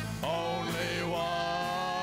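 Live folk-country band playing without lead vocals, with sustained notes over a steady bass. A sliding note rises and falls early on, and the bass line changes about a second in.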